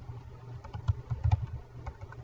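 Typing on a computer keyboard: irregular keystrokes, each a short click with a dull low thud, bunched together about a second in.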